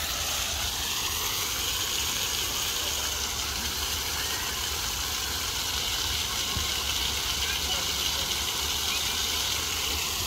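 Splash-pad fountain jets spraying and water splattering onto wet paving: a steady, even rush of water.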